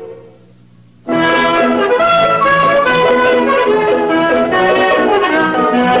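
Brass-led cartoon score music: a held chord dies away, then about a second in trumpets and trombones come in loudly and play a run of quick notes.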